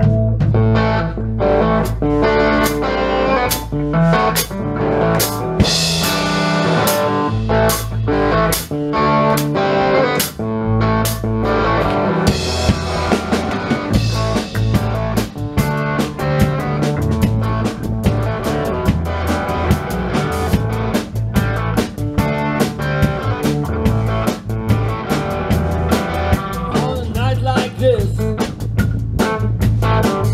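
Live rock band playing an instrumental passage with no singing: electric guitars over a steady drum-kit beat.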